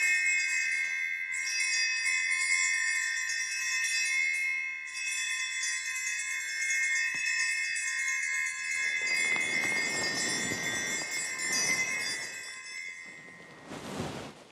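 Altar bells rung during the elevation of the chalice, a bright sustained jingling that carries on almost without a break and dies away near the end. It marks the consecration of the wine at Mass. A low rustle sounds under the ringing in the last few seconds.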